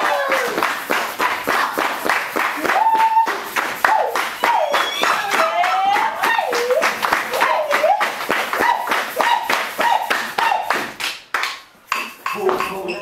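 A group clapping hands in a steady rhythm to accompany a dancer, with a voice singing a wavering melody over the claps. The clapping breaks off for a moment just before the end.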